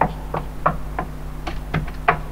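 A run of sharp knocks, about three a second, over a steady low hum.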